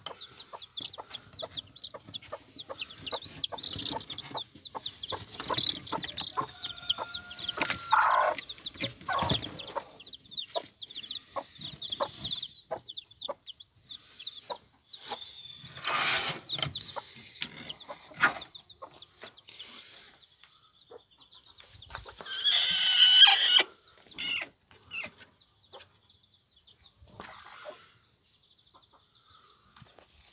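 A brood of chicks peeping in many short, high cheeps while a hen clucks among them. About 22 seconds in comes one louder chicken call lasting about a second and a half.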